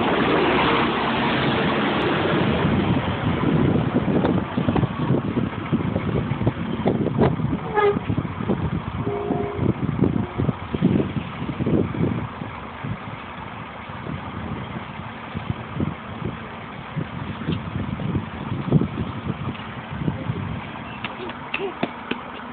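A double-decker bus driving off, its engine loudest in the first few seconds and fading away. Irregular knocks and rustling run throughout.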